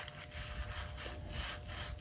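A white wipe rubbing briskly across the skin of the face close to the microphone: a quick run of scratchy strokes, about four a second.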